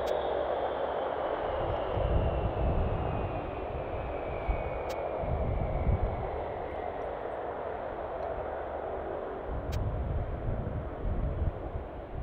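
Jet aircraft engine noise across an airport apron: a steady roar with a high whine that slowly falls in pitch over the first several seconds. A low rumble swells and eases a few times underneath.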